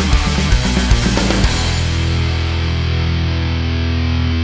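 Heavy metal band playing, with distorted electric guitar through a Revv Generator MkIII amp and a 2003 Mesa cabinet loaded with Celestion Vintage 30s, close-miked with an SM57 and no EQ, plus drums and bass. It opens with a quick chugging riff and drum hits, then about a second and a half in a chord is held and rings out as the cymbal fades.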